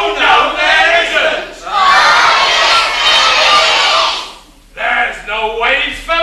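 Several voices shouting together for about four seconds, then a brief lull and a single voice speaking near the end.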